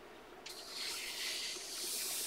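A coloring book page being turned and pressed flat by hand: paper sliding and rustling in a steady hiss that starts about half a second in.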